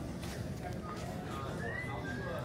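Steady low rumble of a cruise ship underway, heard from inside a lounge, with faint voices and a couple of short high-pitched sounds near the end.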